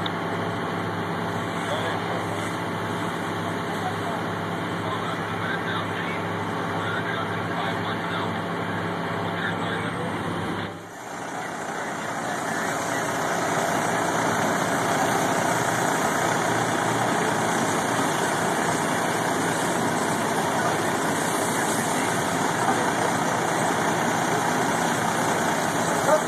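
Fire engines running at a fire scene: a steady engine drone with a low hum, which dips briefly about eleven seconds in and then gives way to a louder, even noise without the hum.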